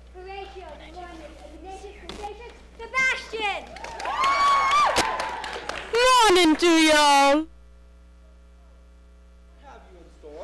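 Stage actors' voices calling out, growing louder, peaking in a very loud drawn-out cry with a wavering pitch that stops abruptly, with a little clapping along the way.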